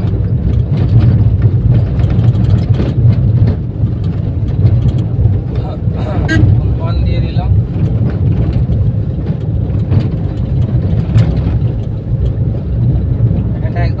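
Steady low rumble of a small Suzuki car's engine and tyres, heard from inside the cabin while it drives along a road.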